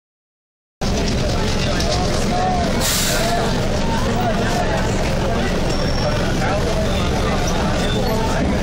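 Mumbai suburban electric train running into a station, heard from inside the carriage: a steady loud rumble of the train with crowd voices mixed in, and a short burst of hiss about three seconds in.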